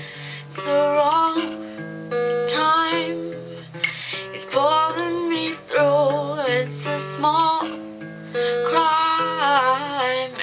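Acoustic guitar playing slow chords with a woman singing over it in short phrases with brief pauses between them.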